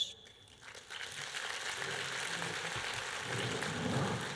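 Audience applause that starts about a second in and builds to a steady level.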